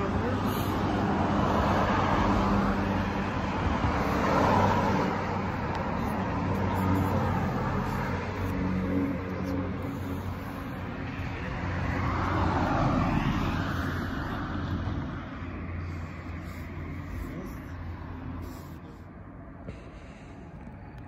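Road traffic: several cars pass one after another, each swelling and fading, over a steady low hum.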